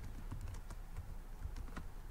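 Faint typing on a computer keyboard, a run of light, irregular key clicks.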